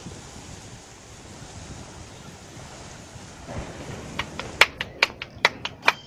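Steady outdoor noise, like wind on the microphone, then hands patting tortilla dough: a quick run of about seven sharp slaps near the end.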